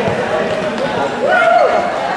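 Players shouting in a reverberant sports hall, with a handball bouncing on the court floor. One long shout rises and falls just past the middle.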